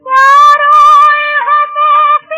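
A female voice singing a high, held note in a 1950s Hindi film song, with a slight vibrato. It comes in right after a short gap and dips briefly in pitch about a second and a half in.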